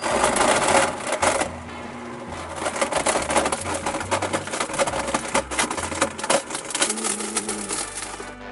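Blendtec blender running at high speed, its blades smashing and rattling a jarful of hard objects (toy cars, CDs, bones and ice) in a rapid clatter that is loudest in the first second or so. Background music with a bass line plays under it.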